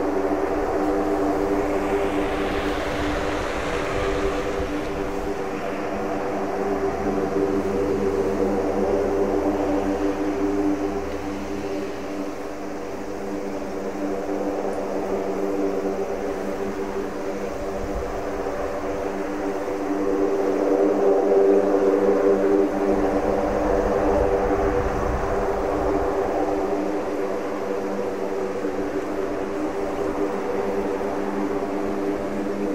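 US Air Force C-130J Super Hercules taxiing on its four Rolls-Royce AE2100 turboprops with six-blade propellers: a steady, many-toned propeller drone that swells louder about twenty seconds in.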